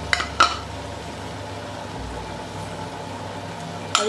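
Two quick knocks of a utensil against the pan, then coarsely ground green peas and masala frying in the pan with a steady low sizzle.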